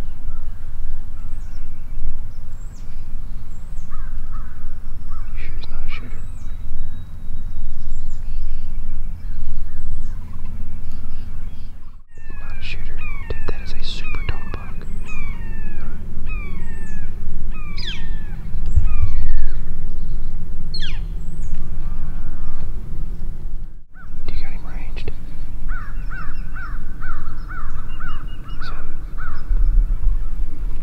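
Small birds chirping and calling in short, quick sweeping notes, with a rapid run of evenly repeated notes near the end, over a low steady rumble.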